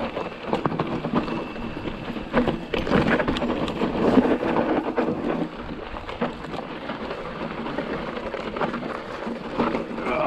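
Fezzari Wasatch Peak hardtail mountain bike rolling down loose, rocky singletrack: tyres crunching over rock and gravel, with many clicks, knocks and rattles from the bike, busiest in the middle seconds.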